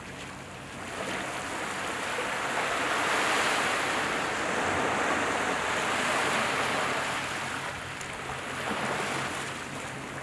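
Sea waves washing onto the shore: a surge of surf that builds over a few seconds and then eases off, over a faint steady low hum.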